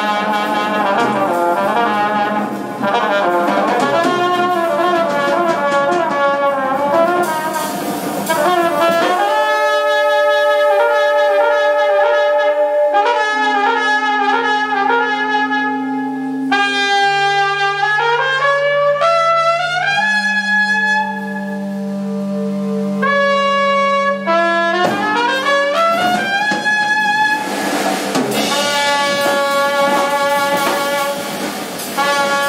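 Live jazz-leaning band led by trumpet and saxophone. About nine seconds in, the bass and drums drop out and the horns play long held notes in harmony with rising slides between them; the full band comes back in near the end.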